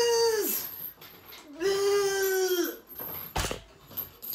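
A man's strained cries of effort while pushing out the last leg-extension reps to failure: a short held cry, then a longer one held at a steady pitch. A thump follows about three and a half seconds in.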